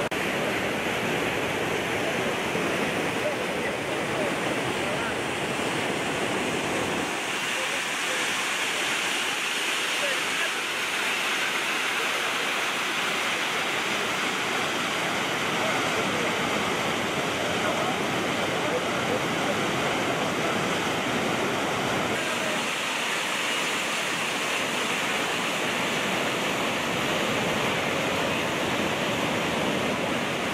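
Steady rushing of a muddy flash flood in a wadi, the torrent pouring through its channel and churning around a small bridge. The sound changes character a couple of times, with less low rumble in the middle stretch.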